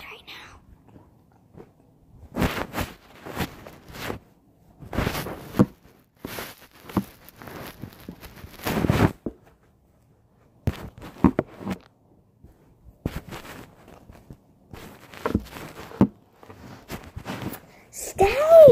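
Handling noise from a phone being moved about close to its own microphone: irregular rustling, scraping and knocks in bursts as the phone, which keeps failing to stay propped up, is repositioned.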